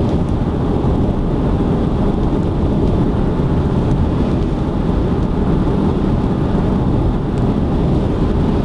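Steady low rumble of tyre and road noise inside a car cruising at expressway speed.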